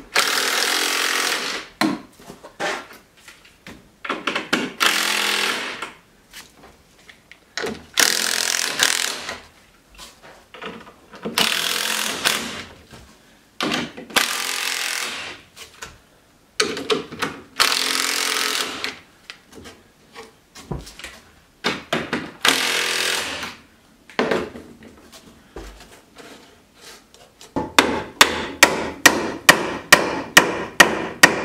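Weathered wood of an old rustic swing being sanded by hand with a sanding pad, in bursts of scrubbing strokes a second or two long with short pauses between. Near the end, a quick run of sharp knocks on wood, about three a second.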